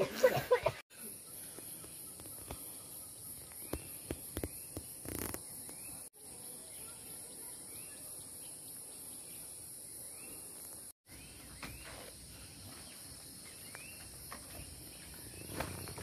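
Steady high-pitched drone of insects, broken off suddenly three times. Short faint rising chirps sound every couple of seconds over it.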